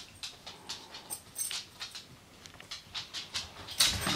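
A dog walking about on a hardwood floor, its paws and claws making irregular light clicks and taps.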